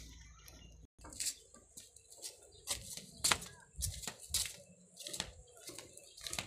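Irregular scuffing footsteps and rustling from someone walking with a handheld phone camera, with a brief dropout about a second in.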